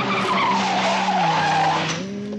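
A Mercedes-Benz saloon's tyres skidding and sliding on a loose dirt road, with a wavering squeal over the tyre noise.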